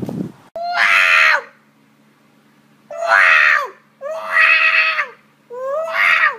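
A black cat yowling loudly in four calls about a second long each, every call dropping in pitch at its end.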